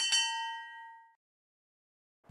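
Notification-bell sound effect: a single bright, multi-tone ding that rings out and fades away within about a second.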